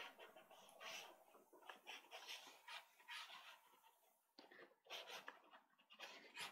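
Near silence, with faint, irregular scratchy strokes of a pastel stick being drawn across pastel paper.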